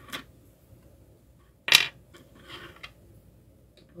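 A single sharp plastic click from an action figure being handled and posed, the sound of a joint or part being moved into place, about halfway through; faint handling noise follows.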